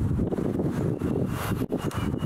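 Wind blowing across a camera-mounted microphone, a low rumble that rises and falls unevenly.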